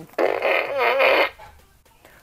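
Gru fart gun toy sounding one fart noise through its horn, about a second long, with a wavering pitch. It starts a moment in and stops fairly suddenly, trailing off briefly.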